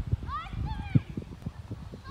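A distant high-pitched voice calling out in gliding, rising and falling tones, over irregular low knocks and rumble on the microphone.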